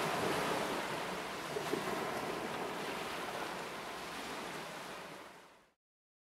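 Steady rush of ocean surf that fades in, holds, and fades away near the end.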